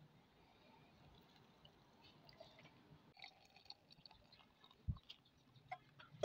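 Near silence: faint room tone with a few small handling clicks and one soft knock near the end.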